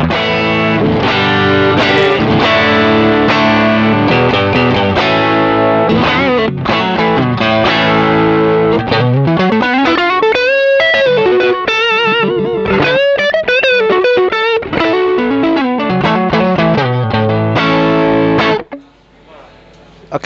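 Squier Bullet Stratocaster electric guitar with Kin's pickups, played through an amp with a drive pedal on. Chords ring out first, then a single-note lead with string bends and vibrato, then chords again. The playing stops shortly before the end.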